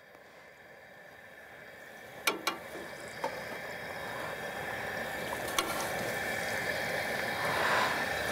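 Battered catfish fillets sizzling in hot peanut oil, about 350 degrees, in a deep fryer pot; the sizzle starts faint and grows steadily louder. Two sharp clicks sound, one a couple of seconds in and one past the middle.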